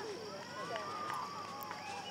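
Faint, unclear chatter of people talking at a distance, over a steady high-pitched insect chorus.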